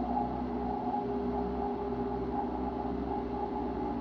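Ambient background music: a steady low drone with several held tones and no beat.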